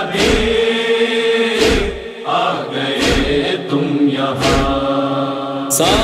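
Wordless backing chorus holding a sustained chant under a Muharram noha, with a regular matam beat, hands striking the chest, thumping about every one and a half seconds, five times.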